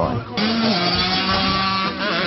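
Dirt bike engine running, cutting in abruptly about a third of a second in. Its pitch drops slightly, then holds steady.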